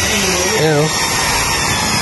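Electric rotary car polisher running steadily with a faint high whine, its pad buffing freshly repainted car bodywork.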